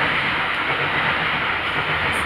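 Steady, even rushing background noise with no voices.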